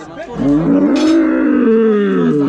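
A young bull, tied in a restraining crate, gives one long loud moo that sinks in pitch at its end.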